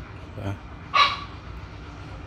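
A dog barks once, briefly, about a second in.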